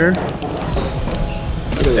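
Paper chopstick wrapper being handled and torn open, with a short crackle near the end, over the steady murmur of a busy restaurant.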